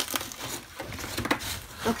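Irregular crackling and rustling as a rubber-gloved hand pokes at and crumbles dry, rotten wood debris.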